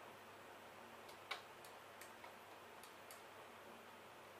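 Faint, scattered clicks of a computer mouse button, several over a few seconds, the loudest just over a second in, over a quiet background hiss.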